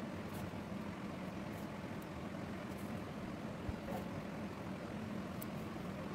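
Steady low background hum with an even haze of noise, unchanging throughout, and a few faint ticks.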